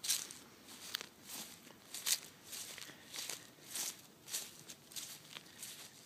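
Faint footsteps on a grass lawn at a steady walking pace, just under two steps a second.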